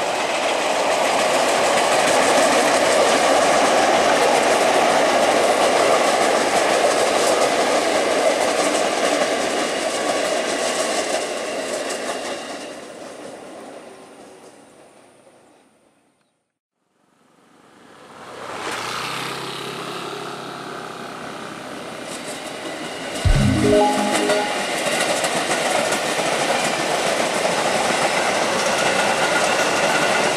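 JR 205 series electric commuter trains passing on the track: steady rolling wheel-and-rail noise from the first train fades away to silence around the middle, then a second JR 205 train fades in, with a brief sharp loud sound a little after two-thirds through followed by its steady running noise.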